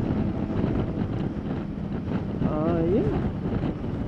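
Wind rushing over a helmet-mounted microphone on a motorcycle at cruising speed, over the steady drone of the BMW K1600GT's inline six-cylinder engine and road noise. A short voiced 'uh' from the rider comes about two and a half seconds in.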